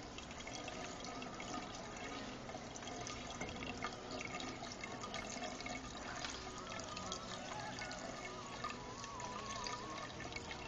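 Water running and trickling steadily in an aquaponics tank, with faint wavering tones in the background.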